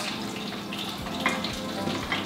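Hot oil sizzling steadily in an electric deep fryer, with a couple of faint taps about a second in.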